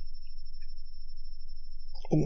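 A low steady hum with a thin, faint, steady high-pitched tone above it that stops just before the end: background electrical noise of the recording.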